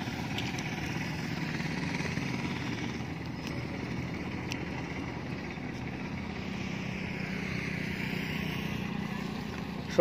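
Steady road traffic noise: a continuous hum of motorbikes and auto-rickshaws passing on the road.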